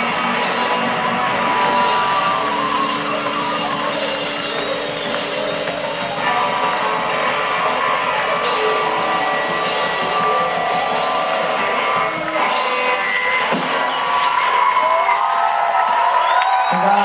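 A live rock band playing on stage with guitars, keyboard and drums, heard from within the audience in a large club hall.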